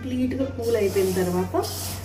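A woman speaking over a steady low hum, with a short hiss near the end.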